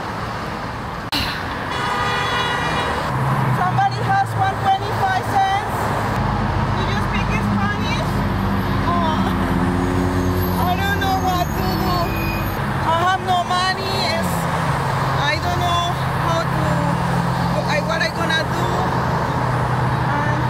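Busy street traffic with a bus engine running low and steady, its pitch falling about 13 seconds in as it pulls away. A short high toot sounds about two seconds in.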